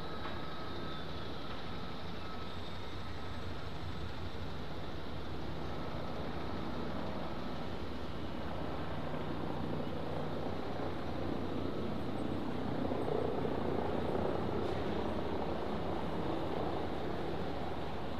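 Steady rumble of urban traffic, swelling somewhat about twelve seconds in and easing off again.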